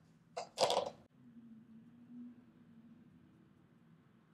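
A woman's short breathy vocal sound, like a sharp exhale, half a second in, followed by a faint low hum held for about two seconds.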